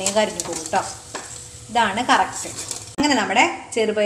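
Green gram vadas sizzling in hot frying oil while a wire spider strainer stirs and scoops them in the pan; a woman's voice talks over it at times.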